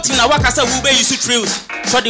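A man rapping into a microphone over a hip hop beat with deep bass hits that fall in pitch; the bass drops out about half a second in, leaving the voice over the lighter beat.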